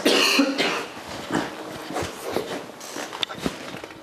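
A person coughing: a loud cough right at the start, followed by a few fainter short sounds.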